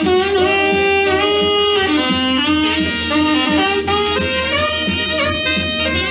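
Alto saxophone playing a jump-blues solo line of held and moving notes over a swing backing with a steady beat.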